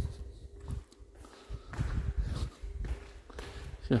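Footsteps walking on a hard tiled floor, heard as irregular dull thumps close to the microphone, over a faint steady hum.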